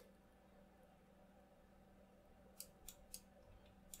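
Near silence: faint room tone, with a few faint clicks of a computer mouse in the last second and a half.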